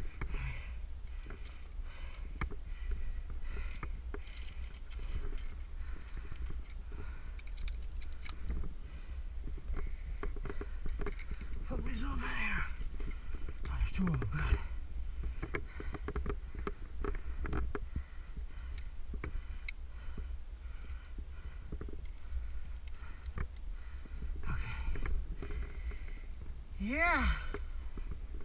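Steady wind rumble on a body-worn camera's microphone, with scattered clicks and knocks of climbing gear and hands on rock, and a few brief vocal sounds from the climber around the middle and near the end.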